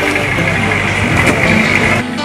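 An engine idling steadily under a dense noisy hiss.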